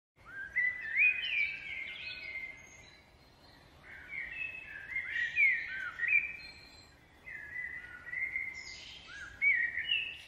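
A songbird singing three short phrases of clear whistled glides, with pauses between them.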